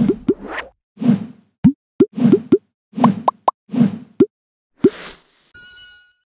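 Cartoon sound effects: a string of about a dozen short, quick plops over several soft puffs, then a brief bright chime near the end.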